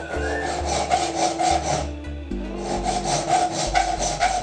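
Hand filing a small turned steel part: quick, repeated rasping strokes of a thin file across the metal, with a brief pause about halfway through, over background music.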